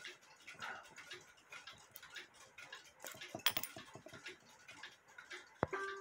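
Faint, irregular small metallic clicks and ticks as a screwdriver works the click and ratchet wheel of a cuckoo clock's main gear, with a short ringing tone near the end.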